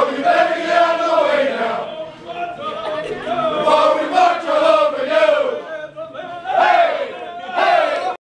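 A group of men's voices chanting loudly in unison, in long held phrases about two seconds each with short breaks between them.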